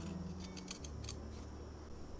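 Fabric scissors snipping through the seam allowances of a linen hat crown to trim them to half width: a quick run of several faint, short snips in the first second and a half.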